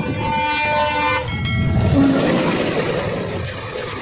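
An Indian Railways passenger train passing close by on the next track. Its horn sounds for about the first second and then breaks off, giving way to a rising rush of wheel and coach noise as the coaches go past.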